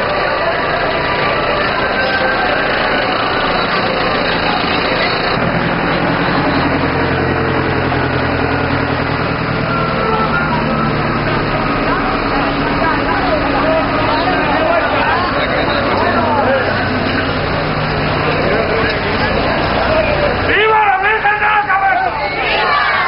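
Crowd chatter in the street over a farm tractor's engine running as it pulls a wagon past at low speed; the engine sound comes in about five seconds in and drops out about two seconds before the end, where clearer, louder voices take over.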